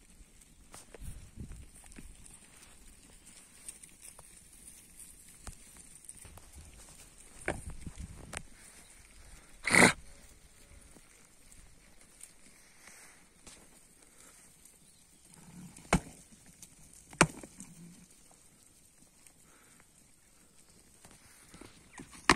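Rams butting heads in a sheep flock: scattered sharp knocks, two very sharp ones about two-thirds of the way in, and a louder, duller bump near the middle.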